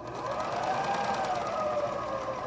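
Juki MO-600-series serger (overlock machine) sewing slowly through fabric: its motor whine rises a little and then eases off, over a fast, fine ticking of the stitching.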